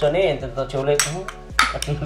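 A small brass miniature cooking vessel being handled, its metal pieces clinking together. There is a sharp clink about a second in and a few more near the end, mixed with voices.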